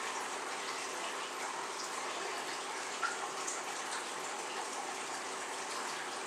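Steady, even background hiss, with one faint tick about three seconds in.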